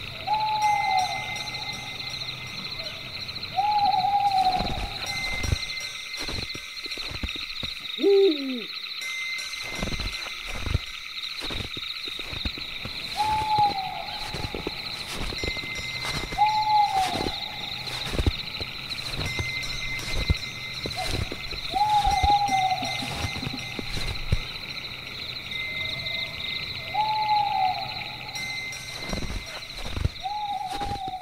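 Night-forest ambience: an owl hooting again and again, a short call every few seconds, over a steady high trill of insects. One lower call slides down in pitch about a third of the way in, and soft scattered knocks run underneath.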